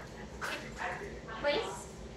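A dog giving a few short barks and yips.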